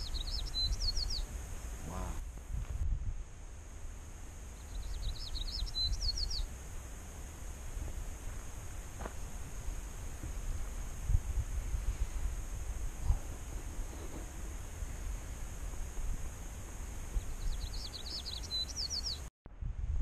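A songbird sings the same short, quick phrase of high falling and rising notes three times: about half a second in, around five seconds in, and near the end. Under it runs a steady low rumble on the microphone.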